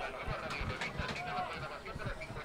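Faint open-air ambience at a football pitch: short, distant shouts from players or spectators, with scattered low thumps on the microphone.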